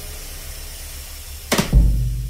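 Vintage 1969 Gretsch Round Badge drum kit played with brushes. A deep bass drum note rings out and fades, then about one and a half seconds in a sharp brush hit lands, followed at once by a loud stroke on the 20-inch bass drum that rings on.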